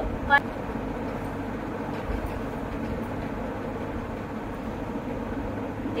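A steady low background hum runs through, with a short spoken syllable just after the start.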